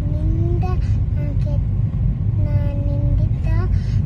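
Steady low rumble of a car, heard from inside the cabin, with a voice faintly making a couple of short held sounds over it.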